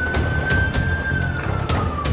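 Siren of the Land Rover Discovery emergency response vehicle wailing: one long tone that holds high, then slowly falls from about a second in. Under it runs background music with a steady beat.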